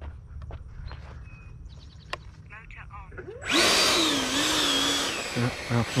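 The 70mm electric ducted fan of an E-flite F-16 Thunderbirds RC jet is throttled up about halfway in as the jet taxis along the runway. It makes a loud, rushing whine whose pitch wavers, lasts under two seconds and then dies away. Before it there are only faint clicks.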